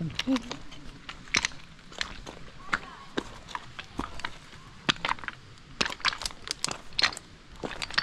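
Footsteps of two people crunching on a path of loose, flat stone chippings, irregular crunches a few times a second.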